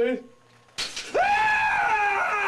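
A man's acted scream of pain, as if he were being electrocuted. A brief grunt comes first, then about a second in a hiss starts and he lets out one long, loud, high-pitched scream.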